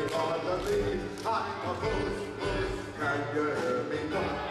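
Live string-band music with a group of voices singing along in held notes over a steady low beat.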